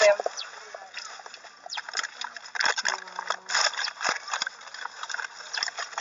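Indistinct voices of a group of people outdoors, with scattered short clicks and knocks and no clear words.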